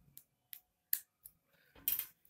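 About four faint, sharp clicks as a metal SIM ejector pin is prodded into the SIM tray hole on the metal frame of a LeEco Le 2 smartphone, with a louder handling noise near the end.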